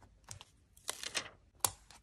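Long fingernails and fingertips tapping and pressing stickers down onto journal paper: a few light clicks and paper rustles, the sharpest click about three-quarters of the way through.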